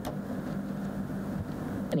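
Steady ventilation hum in a large room: an even hiss with a low drone underneath. A voice starts right at the end.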